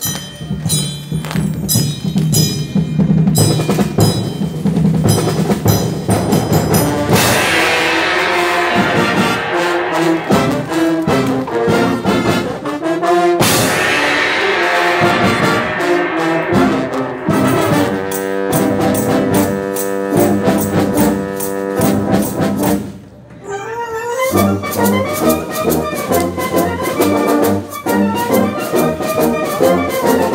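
Live brass band playing: trumpets, trombones and tubas in full chords over drums and cymbal crashes. About three-quarters of the way through the music drops out for a moment, then a new melodic phrase begins.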